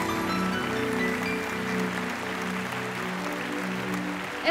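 A live band holding its final chord at the end of a song, with audience applause.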